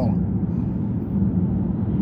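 Steady engine and road noise inside the cabin of a vehicle driving at highway speed, a constant low drone.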